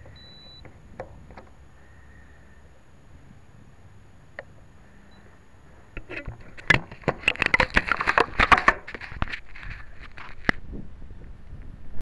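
Fingers handling a small onboard camera right at its microphone, giving a dense run of crackling clicks and rubbing knocks that starts about halfway through. Before that there is only faint hiss with a couple of isolated clicks.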